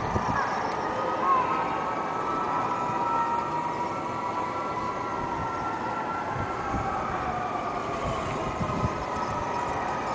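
Garden-scale model trains running on outdoor track: a steady whine that slowly shifts in pitch, with a few scattered clicks, over a constant background hiss.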